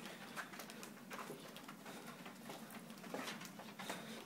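Faint room tone with soft, irregular taps and rustles from walking along a carpeted hallway with a handheld camera.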